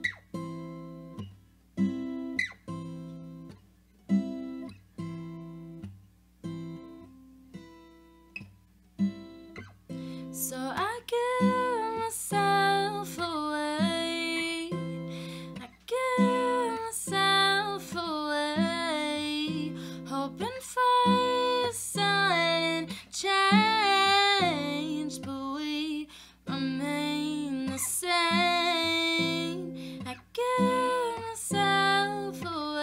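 Live solo performance on a Yamaha acoustic guitar. For about the first ten seconds the guitar plays alone in slow single strums, each left to ring, about one a second. Then a woman's voice comes in singing over the strumming.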